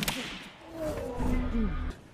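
A sharp crack of an open-hand slap landing on a face in a slap-fighting bout, followed by crowd noise with a few voices calling out for about a second.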